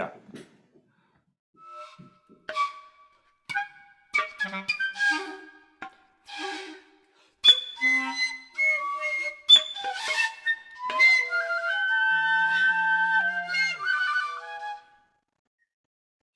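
Recording of solo clarinet in contemporary extended-technique style: sparse, short high notes and quick articulated flurries separated by pauses, becoming denser about halfway through with overlapping held tones and a low steady tone beneath them, stopping shortly before the end.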